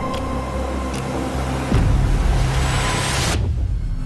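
Cinematic trailer music: a low sustained bass drone, with a hissing riser that swells from about halfway through and cuts off sharply near the end.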